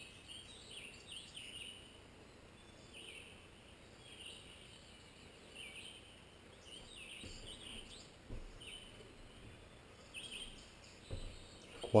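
Faint wild birdsong: short chirping phrases repeat about once a second over low, steady outdoor background noise.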